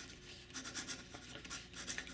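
The No. 8 titanium nib of a 3D-printed Shakour Titan fountain pen scratching faintly across grid paper in a run of short writing strokes, mostly from about half a second in. The slight scratchiness is the feedback typical of a titanium nib.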